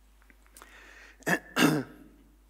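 A man clearing his throat: two short rasps close together in the second half, after about a second of quiet.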